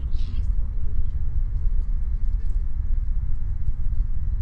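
Steady deep rumble of the Falcon 9 first stage's nine Merlin engines still burning late in ascent, shortly before main engine cutoff.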